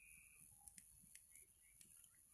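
Near silence with a few faint, scattered clicks: the crackle of a small wood fire.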